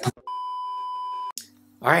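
An electronic beep: one steady, high tone held for about a second, then cut off.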